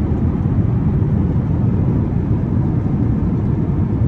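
Steady low cabin noise of a jet airliner: engine and airflow noise heard from inside the passenger cabin, deep and unchanging.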